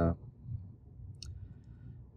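A single small, sharp click about a second in, from fingers handling a partly populated guitar-pedal circuit board and its parts, over quiet room tone.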